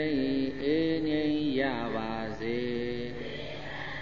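Buddhist chanting by a single voice, a slow melodic recitation in drawn-out phrases with long held notes and pitch glides, breaking off about three seconds in.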